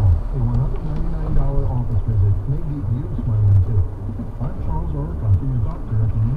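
Jeep engine running low in first gear on a muddy downhill trail, its pitch rising and falling, with scattered knocks and rattles over the bumps.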